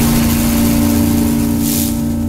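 Sound effects of an animated logo reveal: a steady low, engine-like drone with a hiss over it, and a short high swish near the end.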